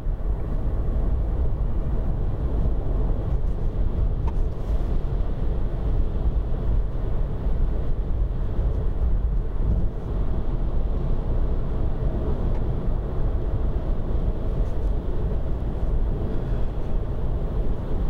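Steady road rumble, tyre roar and wind noise inside the cabin of a VW e-up! electric car driving at speed. There is no engine note, and the pedestrian warning sound is faded out at this speed.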